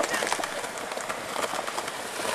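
Skateboard wheels rolling over stone paving tiles, with light irregular clicks as they cross the tile joints.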